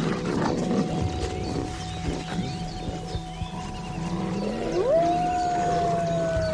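Gray wolf howling: about five seconds in, a howl sweeps sharply up and settles into one long held note that slowly sinks. A fainter, thinner steady howl note is held from about a second in.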